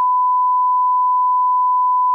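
A single steady electronic beep at one unchanging pitch, a pure tone around 1 kHz, that cuts in suddenly and holds without a break.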